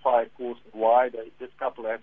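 Speech only: a person talking continuously in an interview.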